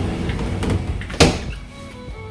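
A door pulled shut with a single sharp thunk a little over a second in; the outdoor background noise drops away once it is closed.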